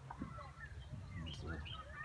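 Small birds chirping faintly.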